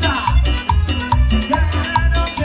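Live band playing upbeat Latin dance music through a PA, with a steady bass pulse about twice a second, drum kit and cymbals.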